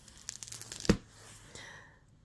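A hardcover picture book being opened: paper rustling as the cover is turned, with one sharp snap about a second in.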